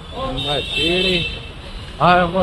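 A man's voice in two short, rising-and-falling sung phrases, with street traffic rumbling underneath.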